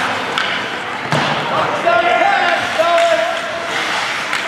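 Ice hockey play in a rink: sharp knocks of sticks and puck against the ice and boards about half a second and a second in, followed by raised voices shouting for a second or so.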